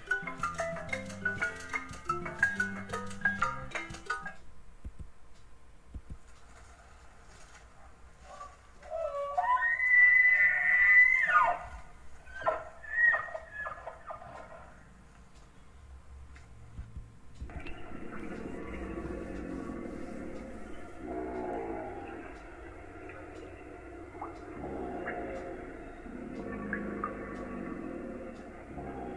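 A short music jingle, then an elk bugling: one long high whistled call about ten seconds in, followed by a few shorter calls. Later a lower, noisier animal call of unclear source carries on to the end.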